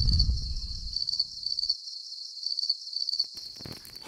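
Cricket chirping sound effect: a steady, high, evenly pulsed trill, used as the stock gag for an awkward silence. A low rumble sits under it for about the first second and a half.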